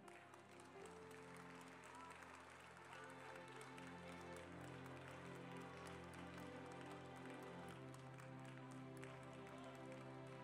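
Soft background keyboard music: long, sustained chords held quietly, coming in about a second in.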